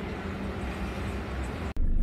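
Steady wash of distant city traffic heard from a high open window above the streets. Near the end it cuts off abruptly and gives way to a louder low hum of engine and road noise from inside a car.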